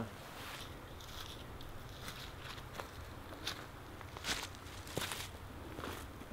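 Faint footsteps crunching through dry fallen leaves at a walking pace, short irregular crunches a couple of times a second.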